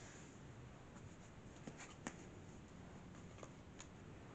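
Near silence: room tone with a few faint, sharp clicks scattered through it.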